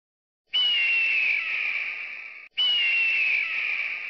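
A shrill, breathy whistle-like screech sounding twice, each starting suddenly and dipping slightly in pitch as it fades over about two seconds; the second begins just as the first cuts off.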